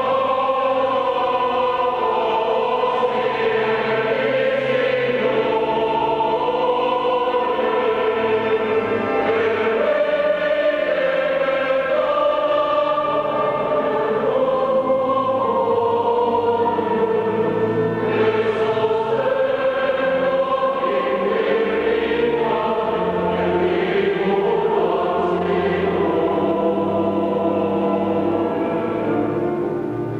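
Mixed choir of men's and women's voices singing a sacred oratorio in held, slowly changing chords.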